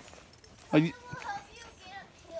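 Speech only: a short spoken question, with faint outdoor quiet around it.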